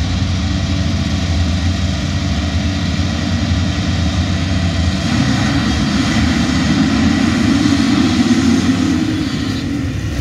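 Many motocross bike engines running together at the start line, held at revs while the riders wait for the start gate to drop. The combined engine noise builds louder over the second half.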